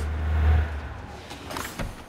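Lamborghini Countach 5000's engine, a deep rumble that swells about half a second in and fades away within the first second. A few light knocks follow near the end.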